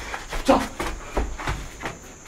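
A brief voice sound about half a second in, among scattered light knocks and shuffling over a low rumble.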